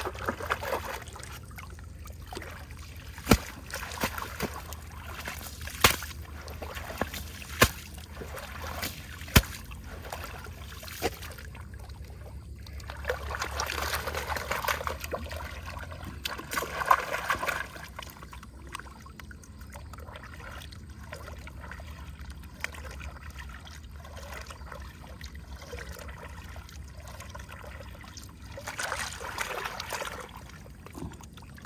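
Muddy water sloshing and trickling as a gold pan is worked by hand, first with a sluice carpet being rinsed out into it, then swirled and dipped to wash the concentrate. A few sharp knocks come in the first ten seconds. Louder splashing comes about halfway through and again near the end.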